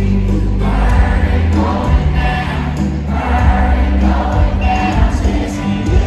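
Live country music from a stadium concert's sound system, loud and bass-heavy, with many voices singing together.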